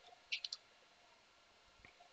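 A few faint computer keyboard keystrokes: a quick cluster of about three clicks a third of a second in, then a single softer click near the end.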